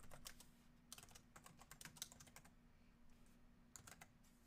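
Faint typing on a computer keyboard: a quick run of key clicks for about two and a half seconds, then a couple more near the end, as a short phrase is typed.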